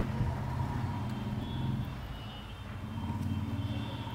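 Steady low background hum with faint high tones joining about a third of the way in.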